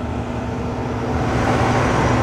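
Steady engine and road rumble of a moving truck, heard from inside the cab, with a steady low hum.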